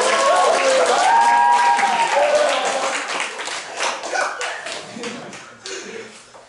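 Audience clapping and cheering with high, excited shouts in the first couple of seconds; the clapping then dies away over the rest.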